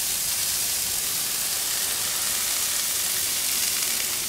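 Corn kernels and Brussels sprouts sizzling steadily in oil on a hot flat-top griddle, an even hiss.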